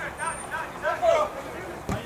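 Short shouted calls from players on a football pitch during open play, the loudest about a second in, followed by a single sharp thump just before the end.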